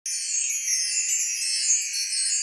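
Intro sound effect: a high, shimmering twinkle of chimes and bells with no low notes, a magical sparkle sting.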